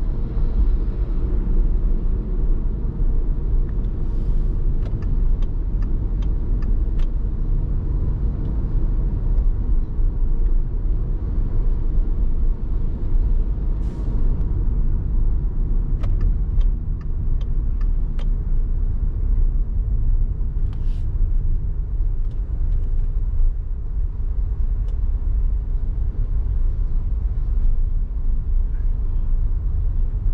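Steady low road and engine rumble of a car driving on a city road. A run of faint, evenly spaced clicks comes a few seconds in, and a few brief faint hisses and clicks follow later.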